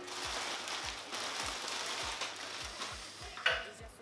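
A clear plastic garment bag crinkling and rustling as a piece of clothing is pulled out of it.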